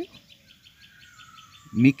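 Faint, rapid, evenly repeated high chirping, with a faint drawn-out whistle falling slightly in pitch through the middle.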